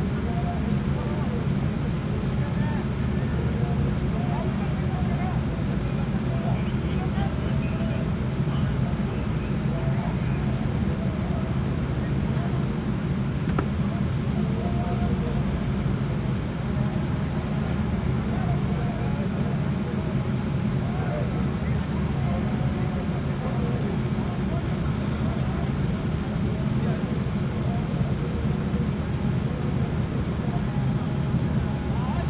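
A steady low rumble throughout, with faint distant voices of players calling on the field now and then.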